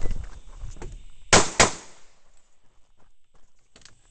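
Two pistol shots from a semi-automatic handgun, a quick pair about a quarter second apart, each followed by a short ringing echo. A low rumble of movement noise comes before them.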